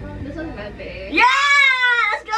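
A woman's loud, high-pitched, drawn-out vocal cry, starting just past a second in and held for under a second, its pitch rising and then falling. Faint background music fades out before it.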